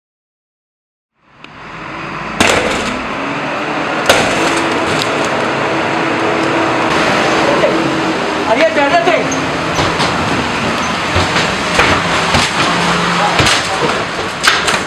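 After about a second of silence, loud on-the-spot raid audio fades in: a steady rush of noise under men's voices, broken by sharp knocks and bangs that come thicker near the end as officers push through a doorway.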